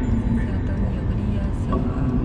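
Steady road and engine rumble inside a moving car's cabin, with a song with a singing voice playing over it.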